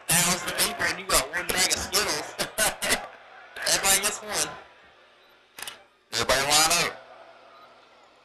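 A man talking in short phrases with pauses between them. No other sound stands out.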